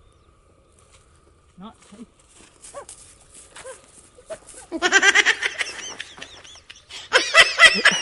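A man laughing in quick, high-pitched bursts, starting about halfway through and loudest near the end.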